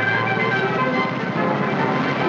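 Film score music playing over the running engines of police motorcycles and cars.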